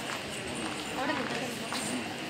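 Indistinct chatter of children and adults talking, with scattered sharp taps among the voices.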